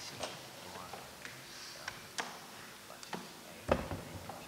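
Scattered light clicks and knocks as a wooden ballot box is handled on the table, with a louder thump near the end.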